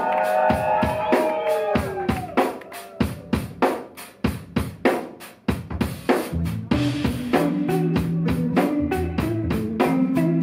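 Live band playing: a drum kit keeps a steady beat throughout. Sustained electric guitar chords slide down in pitch over the first couple of seconds, the drums then carry on nearly alone, and an electric bass line comes in about six seconds in.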